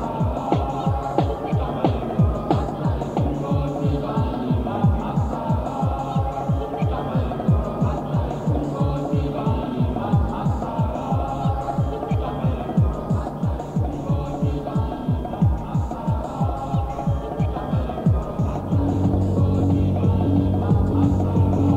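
Hardtek tekno track: a fast, steady kick drum under repeating synth loops. Near the end a sustained deep bass note comes in and the music gets louder.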